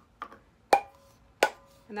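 A light click, then two sharp taps on a stainless steel tumbler about 0.7 s apart, each leaving a brief metallic ring, as the tumbler is tapped to knock off loose glitter.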